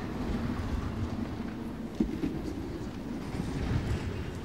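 Ambience of a large library reading room: a steady low rumble under an indistinct murmur, with a single sharp knock about halfway through.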